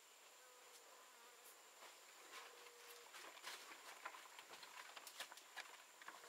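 Near silence in forest: a faint, steady, high-pitched insect drone throughout, a faint insect buzz in the first half, and faint scattered clicks and scuffs of footsteps on stone from about halfway.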